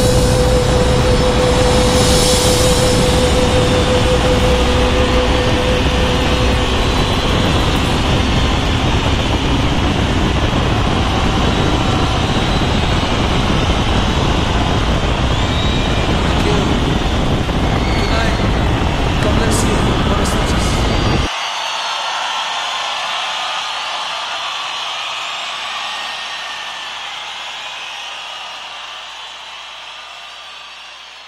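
Riding noise from a BMW GS adventure motorcycle, wind rush with the engine underneath, mixed with a song. About two-thirds of the way in, the low end drops out abruptly and the remaining hiss fades away.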